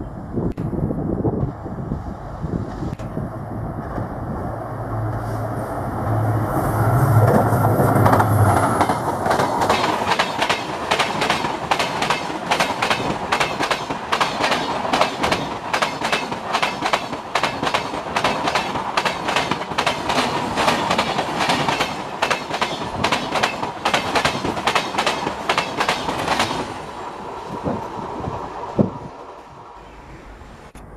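WDG4 diesel locomotive passing close with its engine running, followed by passenger coaches rolling by with a rapid, continuous clickety-clack of wheels over rail joints. The clatter cuts off near the end.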